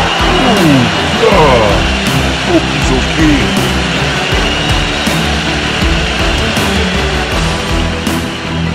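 Energetic soundtrack music with a steady beat, with a few short downward-sliding swoops in the first few seconds.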